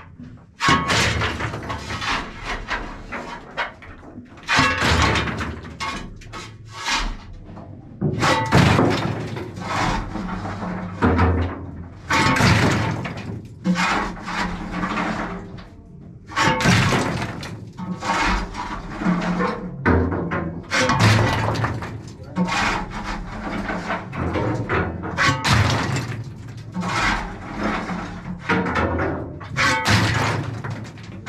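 Muffled, indistinct voices with irregular clattering and knocking, echoing inside a steam locomotive's metal firebox.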